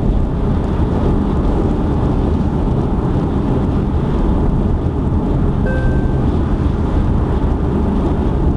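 Steady low rumble of road, tyre and engine noise heard inside a car's cabin while cruising at highway speed. A brief faint beep sounds about six seconds in.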